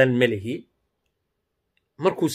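A man speaking, cut off after about half a second, then dead silence for the rest.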